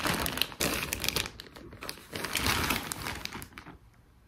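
Plastic bags crinkling and rustling as they are handled. There is a brief lull about halfway, and the sound stops just before the end.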